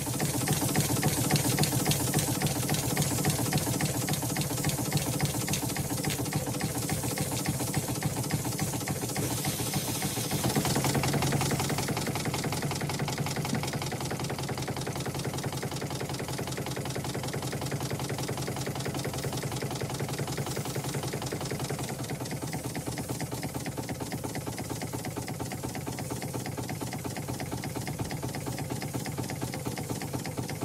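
A motor running steadily with a rapid, even mechanical clatter.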